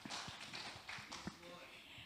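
A few faint, irregular knocks and taps from a person moving about on a stage with a handheld microphone, over quiet room noise.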